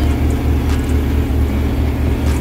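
Heavy diesel truck engine running at idle close by: a steady low rumble with a slight pulsing.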